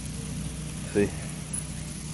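A steady low mechanical hum, like a motor running.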